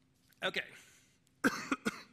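A man coughs twice in quick succession near the end, from a lingering respiratory illness.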